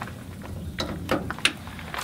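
Handling noise from the air compressor's power lead being dragged into place: a few soft clicks and knocks, close together in the middle.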